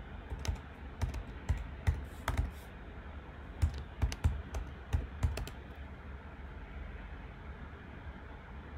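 Keystrokes on a computer keyboard in two short runs of typing, one starting about half a second in and another around the middle, over a faint steady low hum.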